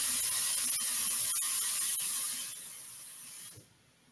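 A loud, steady hiss that drops a step about two and a half seconds in, then cuts off suddenly near the end.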